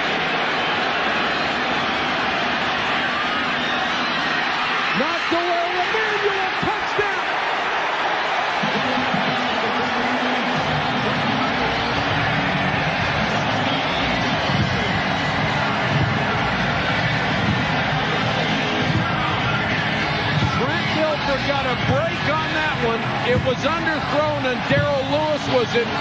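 Football stadium crowd cheering, swelling fuller about ten seconds in as a touchdown is scored, with shouting voices rising and falling over it near the end.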